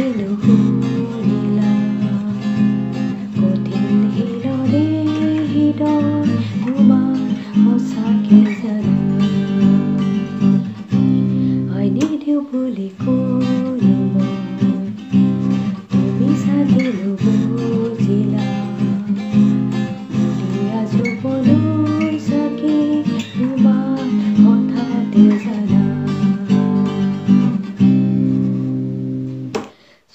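Acoustic guitar strummed steadily in a down-up chord pattern while a woman sings the melody along with it.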